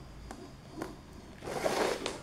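Glue being squeezed from a cartridge nozzle onto a PVC corner strip: quiet at first with a couple of faint clicks, then a short hiss about one and a half seconds in.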